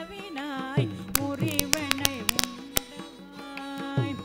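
Carnatic ragamalika performance: a woman's voice and violin carrying gliding melodic lines over mridangam. A quick run of sharp mridangam strokes falls between about one and three seconds in.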